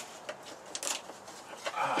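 Hands rummaging among tools and parts for a lathe mandrel: faint scattered clicks with one sharper knock a little under a second in, and a rustle near the end as a man says 'uh'.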